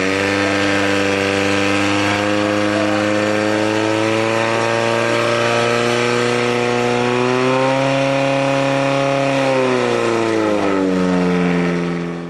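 Portable fire pump engine running at high revs under load as it pumps water through the attack hoses, a steady note that wavers slightly in pitch.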